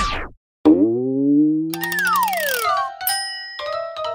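Cartoon sound effects laid over the picture: a springy boing rising in pitch, a falling slide-whistle glide with a quick rattle of clicks, then bright chime tones near the end.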